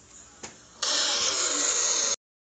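Jumpscare sound effect: a sudden, loud, harsh distorted noise that bursts in just under a second in, holds steady, and cuts off abruptly.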